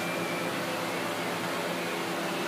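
Steady background hum and hiss filling a large indoor arena, like ventilation fans running, with a few faint steady tones and no distinct sounds standing out.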